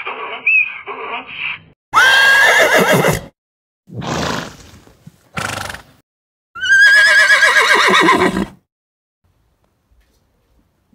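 Horses neighing: two loud whinnies, each starting with a quick rise and then sliding down in a quavering fall over one to two seconds. Between them come two short puffs of breath.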